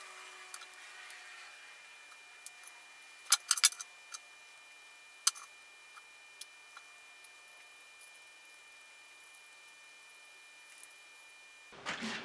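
Scattered small clicks and taps of 3D-printed plastic pump parts and a small screwdriver being handled as the pump is screwed together, loudest in a quick cluster a few seconds in and once more about a second later.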